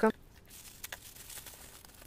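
Faint crinkling of plastic mailer bags being handled, with a couple of soft clicks about a second in, after the tail of a spoken word at the very start.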